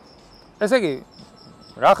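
Crickets chirping in a steady, even pulse, several high chirps a second.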